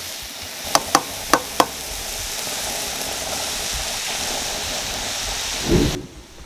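Ground beef and onions sizzling steadily in a frying pan while being stirred, with four sharp taps of the spatula against the pan about a second in. A low thump near the end.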